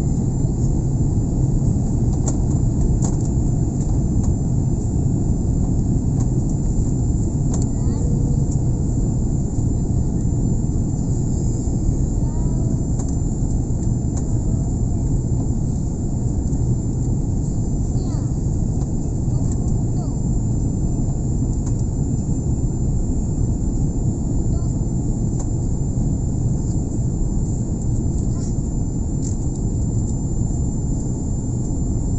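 Steady low roar of an airliner's engines and rushing air, heard inside the passenger cabin on approach to landing, with a thin high-pitched whine held throughout.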